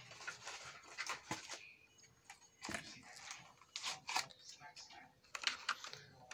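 Small boxed toy being handled and turned over in the hands: irregular light clicks, taps and crinkles of its cardboard and plastic packaging.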